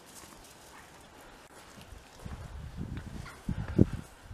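Footsteps on a wet stone path, faint at first and growing louder from about two seconds in, with one sharp step just before the end.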